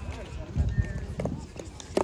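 Pickleball rally: paddles striking the plastic ball with sharp pops, one a little past a second in and a stronger one near the end, over players' footsteps on the hard court and faint background voices.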